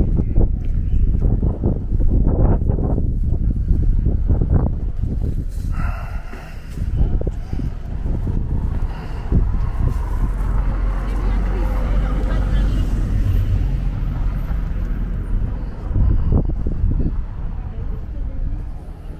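Low rumble of wind buffeting the camera microphone during a walk outdoors, with indistinct voices of passersby and a brief pitched sound about six seconds in.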